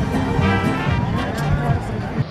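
Background music with held notes, with voices talking over it.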